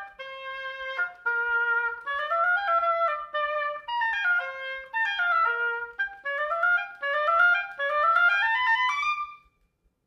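Solo oboe playing unaccompanied. It starts with a few held notes and then moves into quick rising runs of notes, stopping shortly before the end.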